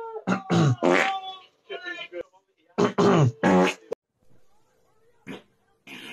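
A man's loud farts: a run of blasts whose pitch falls, starting just after the start, and a second run about three seconds in.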